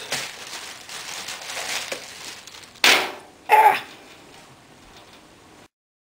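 Small chips of dry ice poured onto a thin layer of hot water in a metal tray, with a crackling, fizzing hiss as they hit the water and two short loud bursts about three seconds in. The sound cuts off suddenly near the end.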